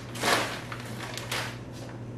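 Plastic zip-top bag crinkling as a hand reaches in and takes out a frozen ice cube, in short bursts, the loudest near the start.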